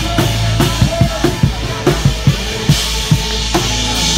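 A live band playing, led by a drum kit: bass drum and snare strike a steady beat over held low bass notes.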